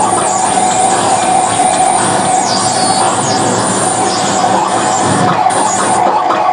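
Live harsh noise played on electronics: a loud, unbroken wall of distorted noise with a steady held tone in the middle and swooping hiss up high.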